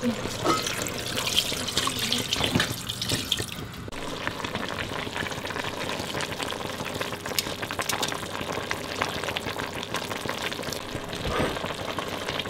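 Water pouring into a stainless steel pot of cooked collard greens for about four seconds. Then the greens in their broth as metal tongs move them, with many light clicks of the tongs against the pot.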